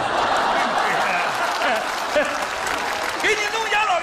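Studio audience laughing and applauding, starting all at once right after a punchline. A man's voice comes in over it near the end.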